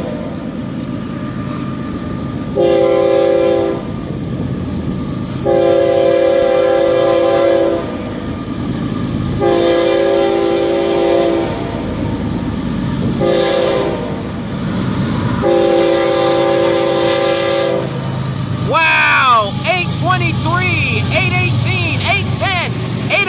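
Diesel freight locomotive's air horn blowing for a grade crossing: five blasts, the last three long, short, long, over the steady rumble of the approaching train. In the last few seconds the GE Evolution-series (GEVO) locomotives pass close below, their engine noise swelling and sweeping up and down in pitch.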